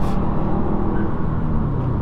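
A 2008 Subaru Impreza WRX's turbocharged flat-four engine pulling under throttle, heard from inside the cabin over low road rumble; the engine note holds fairly steady in pitch.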